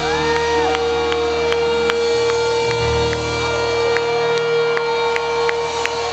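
A live rock band holds the last chord of a ballad, one note ringing on steadily, while the crowd cheers and whoops.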